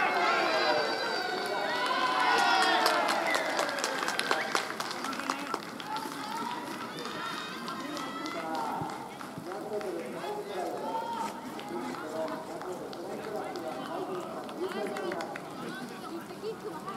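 Players and spectators shouting and calling out during an open-field rugby break. The voices are loudest in the first few seconds, then die down to scattered calls and talk, with sharp clicks mixed in.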